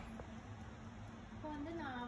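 Low steady hum of an Ikon electric oven running, with a woman's voice starting about a second and a half in.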